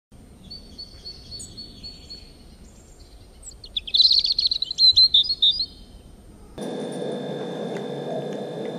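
Songbirds chirping and calling, with a loud, fast run of chirps about halfway through. Near the end the birdsong cuts off suddenly into a steady room hum.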